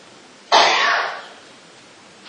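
A single cough from a woman close to the microphone, starting suddenly about half a second in and fading over most of a second.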